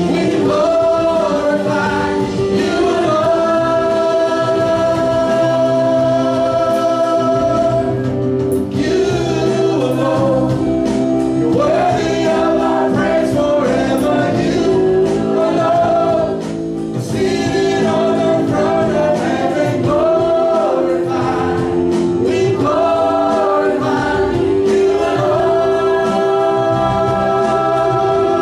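Live church worship band playing a praise song, with a man and a woman leading the singing over the band, including long held sung notes.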